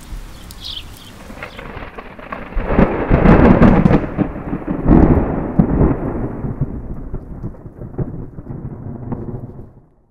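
A roll of thunder: a deep rumble swells about two and a half seconds in, peaks twice, then rolls away and fades out.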